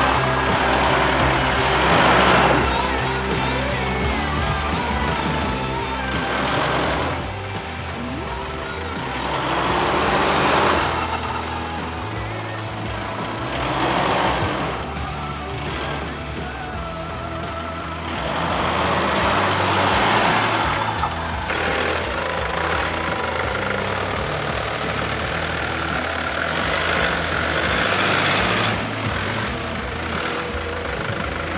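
An off-road SUV's engine and tyres rising and falling in about six loud surges as it drives through deep muddy ruts, under background music.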